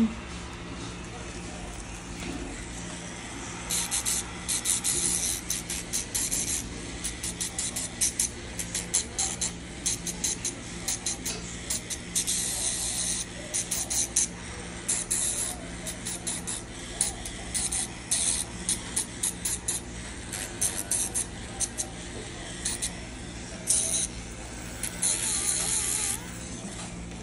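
Electric podiatry nail drill humming steadily while its sanding disc grinds a thick big toenail in many short rasping bursts, starting about four seconds in and coming on and off through the rest.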